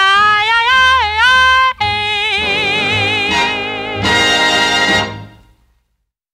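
Closing bars of a 1940s swing boogie-woogie big-band record, with a woman singing a phrase with pitch slides, then a long held final note with vibrato over the band's closing chord. The music stops about five seconds in and dies away quickly.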